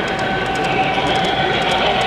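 Model train running on a layout: a steady pitched hum with light clicking, about five ticks a second.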